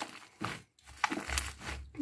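Pink fluffy slime being squeezed and stretched by hand, making squishing, crackling noises in a few short bursts.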